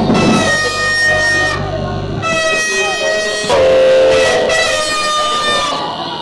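Vehicle horns blaring in long held blasts, several in turn at different pitches, the lowest and loudest about three and a half seconds in, over music and voices.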